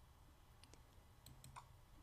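Near silence with a few faint computer mouse clicks in the second half, selecting a folder in the file browser.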